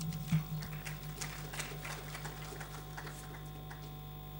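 Faint, scattered applause from a hall audience, irregular claps that thin out toward the end, over a steady low hum.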